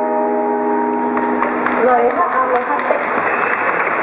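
The final strummed chord of a steel-string acoustic guitar rings out and fades, and about a second in an audience starts applauding.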